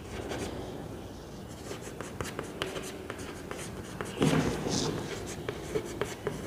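Chalk writing on a blackboard: a run of short scratches and taps as words are written out.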